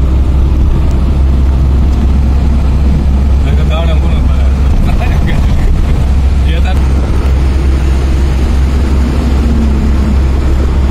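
Steady deep rumble of a moving vehicle, heard from inside with the window open: engine, road and wind noise together. A voice is heard briefly a few times in the middle.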